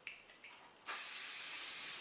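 Aerosol hairspray can spraying a steady hiss, starting just under a second in, to set a freshly teased and pinned section of hair. A few faint ticks come before it.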